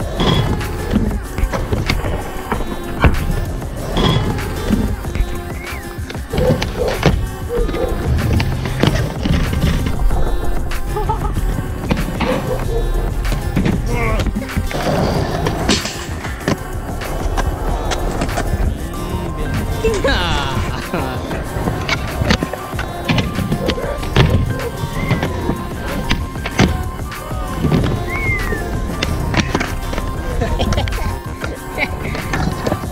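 Skateboards rolling on concrete, with the sharp clacks of boards being popped and landed and a rail slide, over background music.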